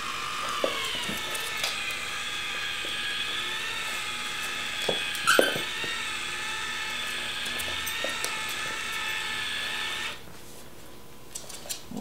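Small electric gear motor of an Arduino-controlled chicken coop door running with a steady whine as it winds the door panel down. The whine dips slightly in pitch at first, then holds steady and cuts off about ten seconds in when the motor stops. A couple of brief clicks come partway through.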